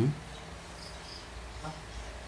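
A pause in talk: low steady background hum with two faint, short, high chirps just under a second in, from an insect.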